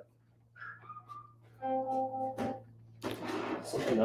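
Home alarm system panel beeping its low-battery warning: a steady electronic boop lasting under a second, about halfway in.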